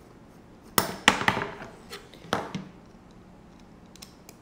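Sharp clacks of hard parts knocking together as a carbon-fibre drone frame and a hex driver are handled: three quick knocks about a second in, then one more a second later.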